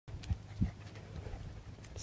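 Faint low rumble with two soft thumps in the first second and a small click near the end: handling and walking noise on a handheld phone's microphone.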